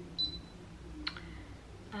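A single short, high electronic beep near the start, then a sharp click about a second in, over a faint low hum.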